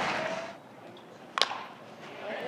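A single sharp crack of a metal baseball bat striking the ball, about one and a half seconds in, over faint ballpark ambience.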